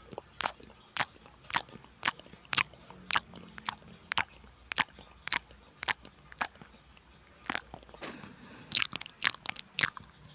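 Crunchy chewing close to the microphone, sharp crisp crunches about twice a second. Near the end comes a louder cluster of crunches as a raw cucumber is bitten.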